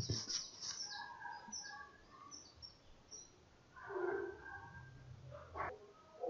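Faint bird chirping: a quick run of short, high notes that slide downward, packed into the first three seconds. A short, lower-pitched sound comes about four seconds in.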